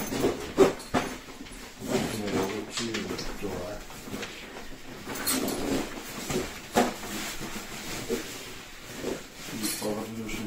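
Low voices talking while a packed stand-up paddleboard backpack is handled and its straps worked, with a few sharp clicks and knocks, twice near the start, once about seven seconds in and once near the end.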